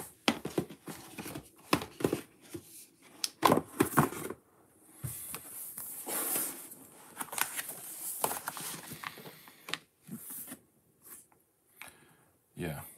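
Paper instruction booklet being handled and leafed through, its pages turning and rustling, with a run of light knocks and clicks in the first few seconds.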